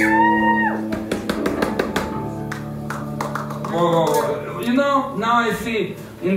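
A live band's guitar chord left ringing out at the end of a song, with a flurry of sharp drum hits over it in the first couple of seconds. The chord dies away after about three and a half seconds, and a man's voice starts talking.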